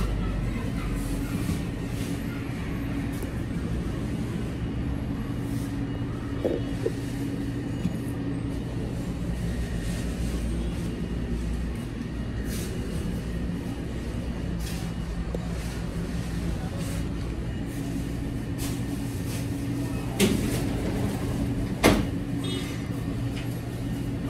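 Steady low machine hum with a few faint held tones, broken by two sharp knocks near the end.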